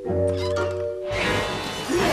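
Cartoon soundtrack: a brief held music chord, then from about a second in a swelling, noisy sound effect that grows louder.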